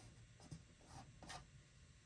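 Near silence with faint rubbing and a few light taps as fingers smooth a glued fabric flower down onto a canvas.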